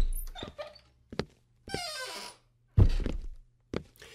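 Sound effects opening a full-cast audio drama: a low thud, a sharp knock about a second in, a brief swishing sound, then a heavier thud near three seconds, over a faint steady low hum.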